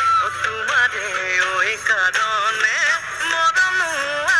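Recorded Assamese Bihu song: a solo singing voice carries an ornamented melody with gliding, bending notes over the music.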